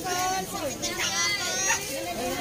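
Children's high-pitched voices calling out and shouting excitedly, with no clear words.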